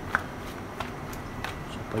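Thin rolled chapati dough being flapped and patted between the hands, giving a few soft slaps, the sharpest just after the start, over a faint steady hiss.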